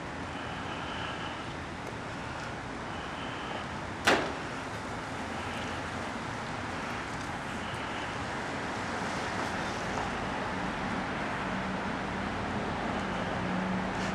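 Steady background noise of road traffic, with a low hum coming up over the last few seconds and one sharp knock about four seconds in.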